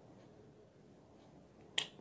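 Faint scraping of fingers working soft, rotten coconut flesh out of a half shell over a steel bowl, with one sharp click near the end.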